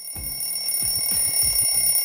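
A sound effect: a steady, high, bell-like electronic ringing that sets in suddenly, over a low, rapid, stuttering pulse.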